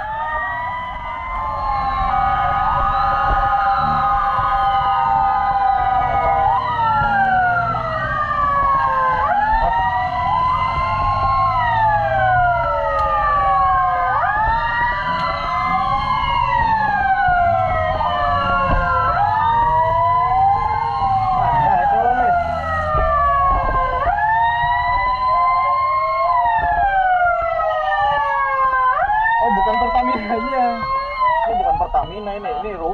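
Several emergency-vehicle sirens wailing at once, their rising and falling tones overlapping out of step, over the low rumble of a motorcycle engine and road noise.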